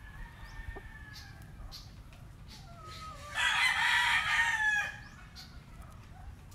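A rooster crows once, loud and harsh, starting about three and a half seconds in and lasting about a second and a half. Fainter drawn-out calls come in the first second and a half.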